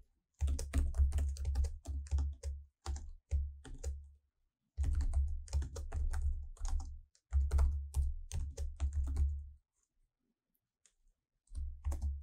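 Typing on a computer keyboard in three quick runs of keystrokes, each keystroke a short click with a low thud. A pause follows, then a brief cluster of clicks near the end.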